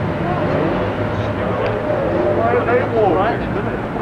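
Street traffic with a vehicle engine running steadily, under faint voices talking.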